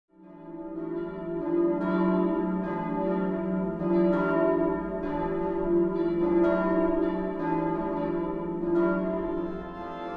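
Church bells ringing, several bells with overlapping, lingering tones and fresh strikes about once a second, fading in at the start.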